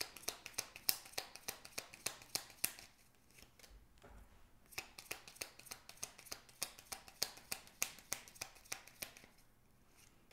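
A tarot deck being shuffled by hand: soft card snaps at about four a second, pausing briefly near the middle before picking up again.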